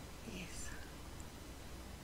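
A single faint whisper about half a second in, then quiet room tone with a steady low hum.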